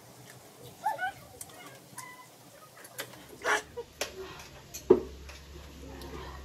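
Spicy ramen noodles being eaten with forks: a noodle slurp about three and a half seconds in and a sharp clink of a fork on a plate just before five seconds, with a few brief, faint vocal sounds earlier.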